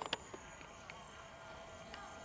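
Quiet outdoor ambience with a faint steady buzz running through, and a couple of soft clicks just at the start.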